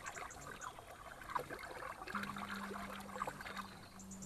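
Water being stirred by hand in a plastic tub, with small splashes and trickles as nutrient solution is mixed in. A low steady hum comes in about halfway through.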